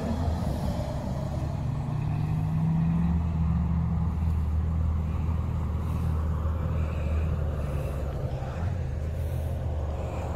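Car engine running at low, steady revs: a continuous low drone with no revving.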